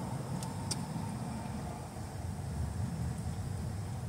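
Low, uneven outdoor background rumble, of the kind distant traffic or wind on the microphone makes, with two faint clicks under a second in.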